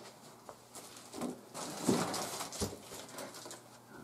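Faint clicks and rustling from small parts and tools being handled on a workbench, in a few short scattered bursts.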